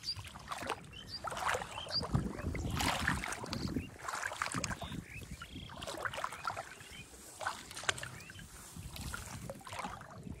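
Irregular sloshing and splashing of shallow pond water with rustling, over a low rumble.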